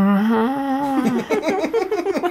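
A man humming one long, drawn-out thinking "hmmm" that rises slowly in pitch, then breaking into short bursts of laughter about a second in.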